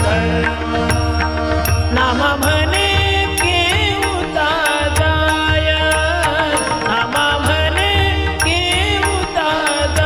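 Music of a Marathi devotional abhang: a melody line bending in pitch over a steady held drone, with a regular low drum beat and evenly spaced high clicks.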